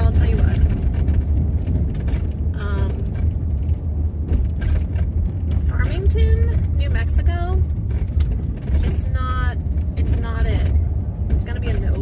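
Steady low road and engine rumble inside a moving van's cabin, with a woman talking over it in short stretches.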